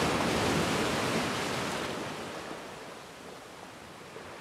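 Sea surf washing on a rocky shore, a steady rush that fades away over the second half.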